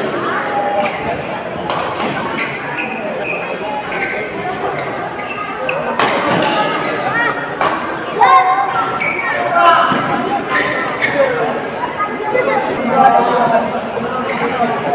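Badminton rally in a large hall: rackets striking the shuttlecock with sharp hits at irregular intervals, under the voices of people around the court.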